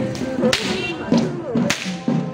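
Long rope whips of perahera whip-crackers cracking twice, about half a second in and near the end: the whip-cracking that traditionally heads a Sri Lankan procession. Rhythmic procession drumming plays behind.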